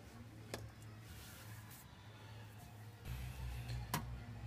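Quiet handling sounds: a faint click about half a second in and a sharper clack near the end as a steel drum brake shoe with its parking brake lever is set down on the floor, over a low hum that strengthens about three seconds in.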